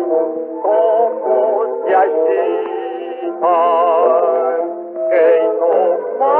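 1926 78 rpm record of a jazz band playing a tango-fado: a melody line with heavy vibrato over held chords, the sound narrow and thin, cut off above about 4 kHz as on early records.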